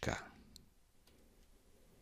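A single short computer mouse click about half a second in, with a fainter click near one second, then near silence.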